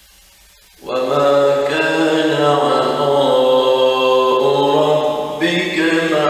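A man reciting the Quran in Arabic in the melodic tajweed style, drawing out long held notes that rise and fall slowly. The recitation starts about a second in.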